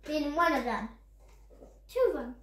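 A child's voice: one drawn-out vocal sound falling in pitch during the first second, then another starting near the end.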